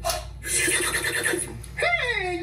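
A person's voice making non-word sounds: a breathy, noisy passage, then a high, wavering cry near the end.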